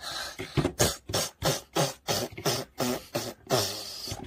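A person making short, rhythmic mouth noises, puffs and grunts about three a second, acting out a straining doll on a toy toilet.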